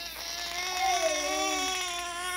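A long, high-pitched, wavering vocal whine, held unbroken with slight glides in pitch: drawn-out laughter.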